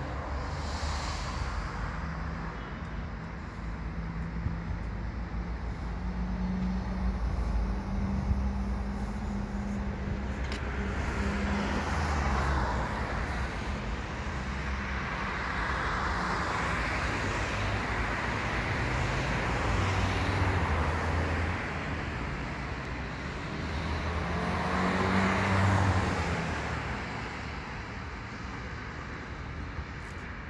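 Steady city road traffic: cars passing in a continuous stream, with several louder passes swelling and fading over a few seconds each, the loudest about 25 seconds in.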